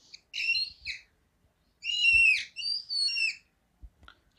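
Whiteboard marker squeaking across the board as a square is drawn, in about four high-pitched squeaks, one per stroke.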